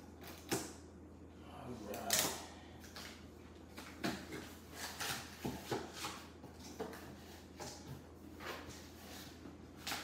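Scissors cutting the packing tape on a cardboard shipping box, then the cardboard flaps being pulled open: scattered clicks, scrapes and rustles of cardboard.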